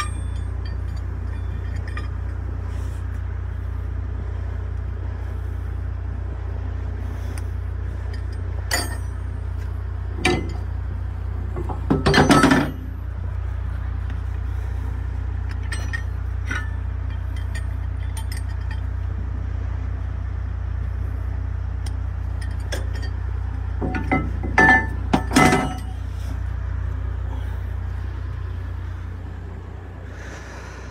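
Steel load-securing chain and hooks clinking and rattling as they are handled on a trailer deck, in scattered single clinks, with the loudest rattles about twelve seconds in and again in a cluster near the end. A steady low rumble runs underneath.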